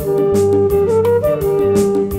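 Live band music from a Mappila song: a held lead melody over bass, keyboard and tabla percussion keeping a steady beat.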